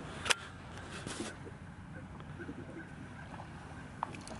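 Faint wind and water noise around a bass boat, broken by one sharp click about a third of a second in and a fainter click about a second later.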